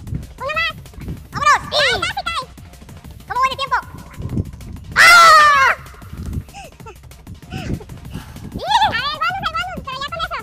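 Basketball shoes squeaking on a hardwood court in short high chirps, the loudest and longest about five seconds in, with a few dull thuds of a basketball bouncing.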